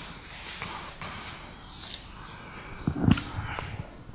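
Paper and book pages rustling as a Bible is leafed through to a passage, with a couple of soft low thumps about three seconds in.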